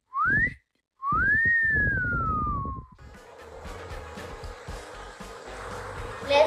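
A wolf whistle: a short rising note, then a longer one that climbs and slowly falls away, ending about three seconds in. It is followed by a faint steady background.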